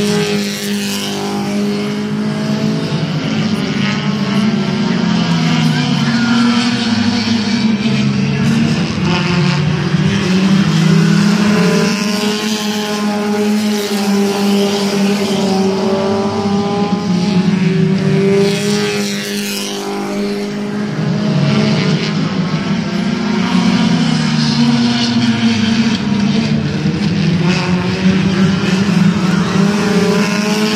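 A pack of compact stock cars racing on a short oval, several engines running together, their pitch rising and falling over and over as the cars accelerate and lift for the turns.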